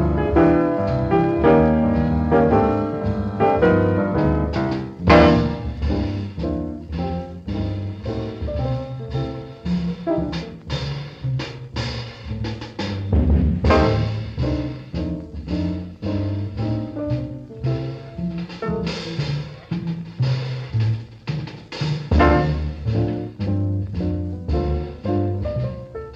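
Jazz piano trio recording from about 1950: piano leading over walking double bass and a drum kit, with sharp drum and cymbal accents along the way, the strongest about five seconds in.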